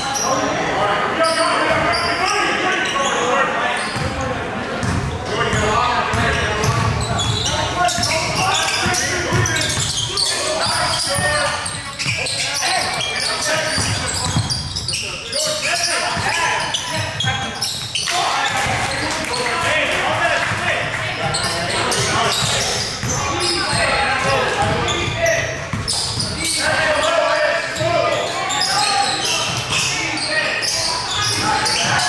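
Basketball game play in a large gym: the ball bouncing repeatedly on the hardwood court, mixed with indistinct shouting from players, coaches and spectators.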